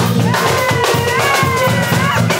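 Live band rehearsing: drum kit and bass guitar keep a steady groove while a melody line slides up and down over it, heard in a small room.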